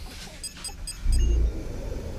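A quick run of short electronic beeps, then a loud low rumble about a second in, typical of a powered sci-fi sliding door opening.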